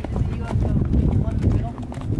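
Horses walking on a dirt trail, their hooves clopping, with a voice heard now and then.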